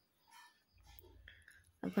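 Faint, indistinct voices with a brief low rumble, then a person starts speaking loudly near the end.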